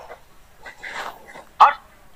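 Stifled human laughter: soft breathy huffs, then one short, high squeal of a laugh about one and a half seconds in.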